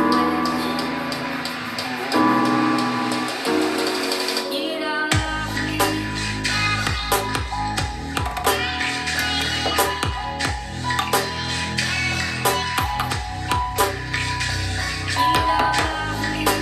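Music playing from a JBL Charge 4 portable Bluetooth speaker at 60% volume. About five seconds in, a heavy bass line and a steady drum beat come in under the melody.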